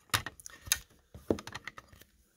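Hard plastic graded-card slabs clicking and clacking against each other as they are handled, a quick irregular series of sharp clicks.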